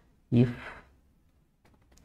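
A man's voice says a single word, "if", which trails off into a breathy release, followed by a pause of near silence.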